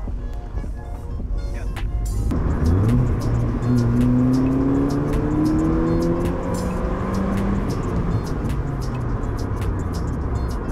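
The 2008 Honda Fit's four-cylinder engine, fitted with an aftermarket air intake and HKS exhaust, heard from inside the cabin under acceleration: about two seconds in its note starts to climb steadily in pitch for several seconds, then levels off. Background music with a steady beat plays over it.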